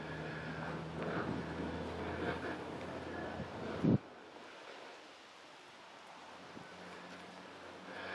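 Wind buffeting the microphone: a low rumble and hiss that drops away about halfway through, leaving a quieter, steady background.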